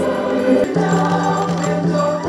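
Choir singing with long held notes; the chord shifts to a new, lower-based note about two-thirds of a second in.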